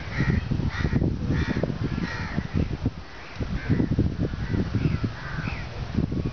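Crows cawing in a string of short, repeated calls, over a low, uneven rumble.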